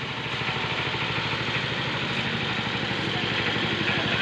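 Old-model belt-driven paddy threshing machine and its engine running steadily, with a fast, even beat.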